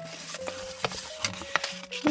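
Soft background music of steady held notes, with a few light clicks from a folded paper leaflet being handled.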